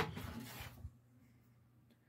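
A sharp click of a door latch right at the start, then a faint rustle of the door swinging open lasting under a second, then near silence.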